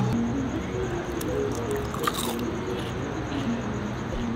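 Biting into and chewing a fried blooming onion, with one short crunch about two seconds in, over quiet background music.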